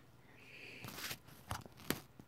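A few faint, short clicks close to the microphone, about one second in and again near the end, with a soft rustle before them.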